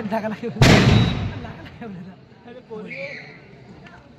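A single loud bang about half a second in, dying away over about a second, with voices around it.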